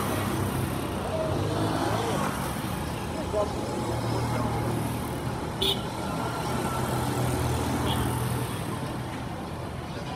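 Busy city street traffic: motor vehicle engines running steadily close by, with people's voices in the background. Two short sharp clicks or knocks, about three and a half and five and a half seconds in.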